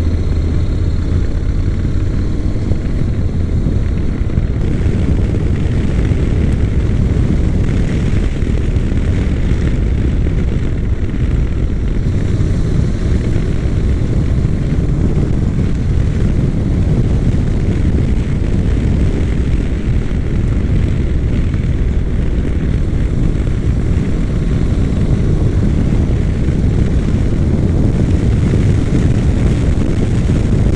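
Honda NC700X motorcycle engine running while riding at road speed, largely buried under a steady, heavy low wind rumble on the camera microphone. It gets slightly louder toward the end as the bike speeds up on the open road.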